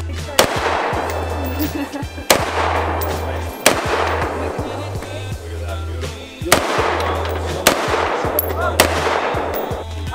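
Six single gunshots spaced one to three seconds apart, each with a short echoing tail, over background music with a deep steady bass.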